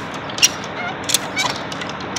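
Cargo strap ratchet being worked by hand, giving a few sharp metallic clicks as a slack strap is tightened down on a truck load, over steady background noise.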